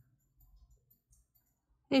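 Near silence broken by a few faint small clicks from hands working a crochet hook and yarn. A woman's voice starts right at the end.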